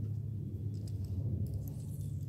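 Steady low hum, with a few faint ticks about one and a half seconds in.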